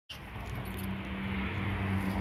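Steady low hum of an idling engine, with soft rustling as a dog rolls on its back in the grass.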